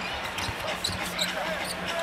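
A basketball being dribbled on a hardwood court in a series of short bounces, over the steady murmur of an arena crowd.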